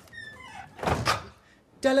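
A door squeaks briefly and then shuts with a short thud about a second in. Near the end a man's singing voice begins.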